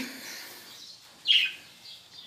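A budgerigar giving one short chirp that falls in pitch, about a second in.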